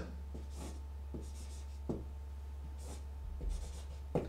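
Felt-tip marker drawing on a large paper sheet on a wall: about six short, faint strokes as arrows are drawn, over a steady low hum.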